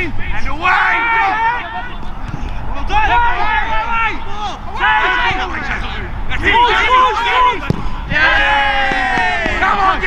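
Men shouting to each other across a soccer pitch in about five separate calls, each a second or so long.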